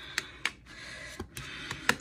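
Handling noise from toys being moved by hand: about five light clicks and taps, the last one near the end the loudest, over a faint steady hiss.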